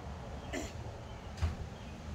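A person's short throat-clearing cough about half a second in, then a sharp click about a second and a half in, over a steady low rumble.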